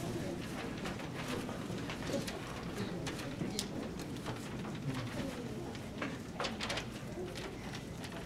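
Quiet rustling and handling of loose sheet-music pages as they are set on a grand piano's music stand, with short crisp paper sounds scattered through.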